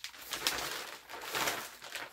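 Clear plastic packaging bag crinkling and rustling as it is handled, in irregular bursts, loudest about half a second in and again near a second and a half.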